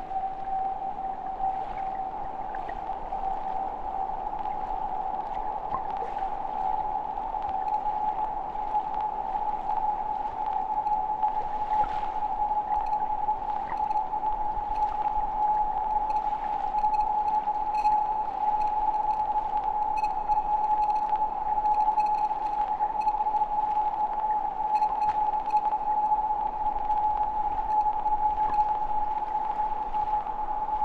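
Ambient sound-art piece built on hydrophone recordings of river water: a single steady high drone, rising very slightly in pitch, held over an even hiss of underwater noise and growing a little louder. Faint high pinging tones join in about halfway through.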